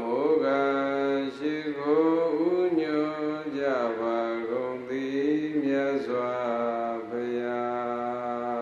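A Buddhist monk chanting Pali verses into a microphone, a single male voice in a slow melodic recitation of long held notes that glide up and down.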